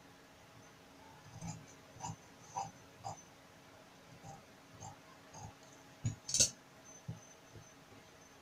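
Tailor's scissors cutting through trouser fabric in a series of short, soft snips, then two sharper clicks just after six seconds in.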